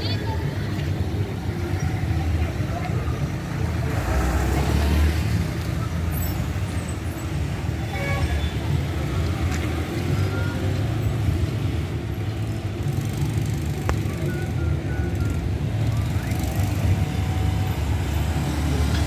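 Street ambience: a steady traffic rumble from passing motorcycles and cars, swelling briefly about four seconds in, with indistinct voices of people in the background.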